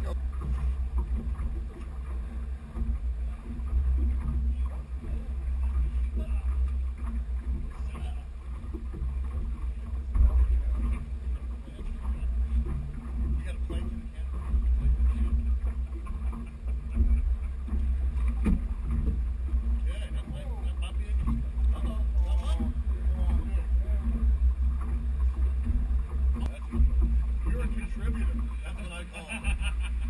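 Wind buffeting the camera microphone aboard a small boat on choppy water: a steady, gusting low rumble, with water slapping the hull and a few scattered knocks.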